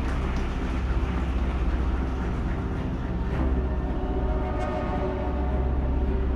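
A crowd applauding over a steady low rumble. Faint music comes in about four seconds in.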